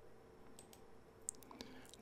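Near silence with a few faint computer mouse clicks, the loudest about a second and a half in.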